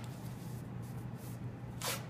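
Hands rubbing and smoothing adhesive athletic tape over the ankle, with one short ripping sound of tape being pulled or torn near the end.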